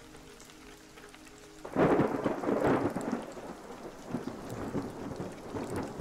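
A roll of thunder breaks about two seconds in and rumbles on, slowly fading, with rain.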